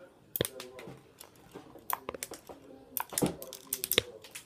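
Sharp plastic clicks of a LEGO model's shooters being fired by hand: single clicks about half a second in and around two seconds, then several in quick succession near the end.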